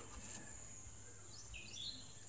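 Faint outdoor background: a steady high-pitched insect drone, with a brief bird chirp about a second and a half in.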